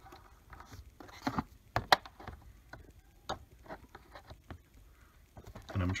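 Scattered small clicks and light knocks of needle-nose pliers and hard plastic as a spring-loaded plastic release tab on a crankcase breather tube connector is worked loose, the sharpest click about two seconds in.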